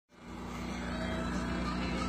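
An engine running steadily, a low even hum that holds one pitch throughout and fades in at the very start.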